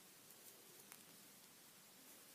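Near silence: faint room hiss with a few faint ticks.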